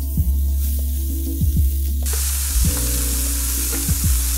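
Diced onion, celery and carrot sizzling in hot rendered beef fat in a stainless steel skillet. The sizzle gets much louder about halfway through as the rest of the vegetables hit the pan. Background music plays throughout.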